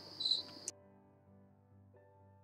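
Faint insect chirping: two short, high chirps over a steady high-pitched ring, which cut off abruptly less than a second in. Very faint sustained background music follows.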